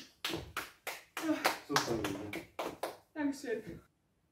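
One person clapping, about four claps a second, over talk.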